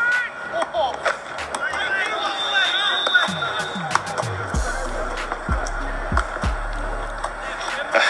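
A soccer ball being kicked and bouncing: a string of short, sharp thuds, with faint voices behind. From about halfway a hip-hop beat with deep bass notes that slide down in pitch comes in.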